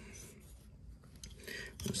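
Faint handling noise of a carbon fiber knife handle scale being picked up and set against the steel knife frame: a few light clicks, then a brief soft scrape about one and a half seconds in.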